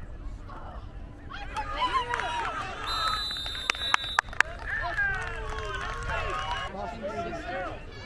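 Spectators and sideline voices shouting and cheering together during a youth football play. About three seconds in, a short steady high whistle sounds, the referee blowing the play dead, followed by a few sharp knocks.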